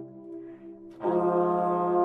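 Three Bb ophicleides playing a slow brass chorale: a held chord releases at the start, there is a short gap of about a second, then the next sustained low chord comes in together.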